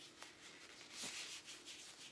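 Faint rubbing and rustling, loudest about a second in, over a low steady hum.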